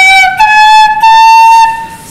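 Eight-hole Carnatic bamboo flute playing an ascending scale in raga Sankarabharanam, stepping up through three clear held notes. The last note is held about a second and fades near the end.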